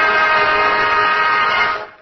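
A radio orchestra holds one long final chord of its opening theme music. The chord dies away near the end.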